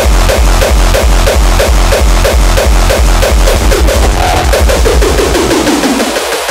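Hardcore techno music: a heavy kick drum pounding about three beats a second under synths, with a line falling in pitch over the last two seconds.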